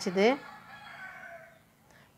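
A faint, drawn-out call in the background with a few steady pitches, lasting about a second and fading out.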